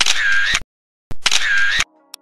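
Camera shutter sound effect, played twice about a second apart, each identical and lasting just over half a second.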